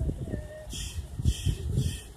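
Wind and handling rumble on a handheld phone microphone, with three short hissing scuffs about half a second apart in the second half.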